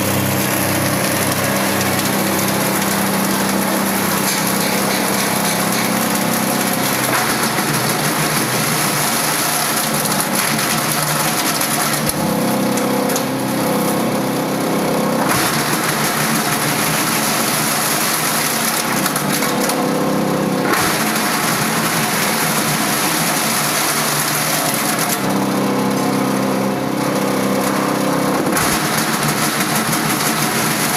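Model CS 5 electric single-shaft shredder running steadily while it shreds waste rubber inner tubes: a continuous loud mechanical grinding over a motor hum. The harsh grinding eases for a few seconds twice, about halfway through and near the end, leaving a steadier hum.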